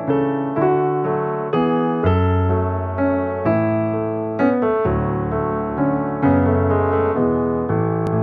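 Piano-voiced keyboard playing a short intro jingle of sustained chords, a new chord every half second to a second.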